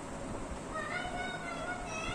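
Whiteboard marker squeaking against the board as it writes: one wavering, high squeaky tone lasting about a second, starting near the middle.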